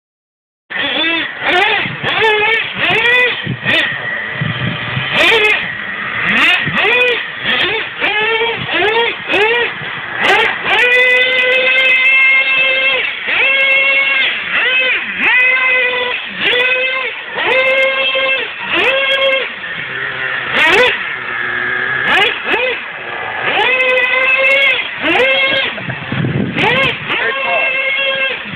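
Traxxas Revo 3.3 nitro RC truck's two-stroke glow-fuel engine being revved hard, a high-pitched whine that rises and falls with each throttle blip, roughly once or twice a second.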